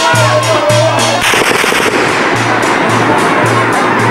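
Yemeni zaffa wedding music: a tabl drum beating a steady low rhythm of about three strokes a second with a metal tasa drum, under a mizmar reed pipe melody. About a second in, a dense run of rapid cracks and bangs breaks out and covers the music, thinning out over the next second before the drum beat comes back.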